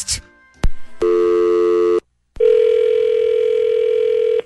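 Telephone line clicking off, then a one-second electronic tone of several steady pitches. After a short break comes a second click and a steady telephone dial tone for about two seconds.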